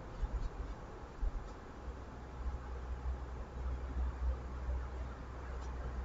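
Fabric strips being slid and nudged by hand on a cutting mat: soft faint handling sounds with a few light ticks, over a steady low room hum.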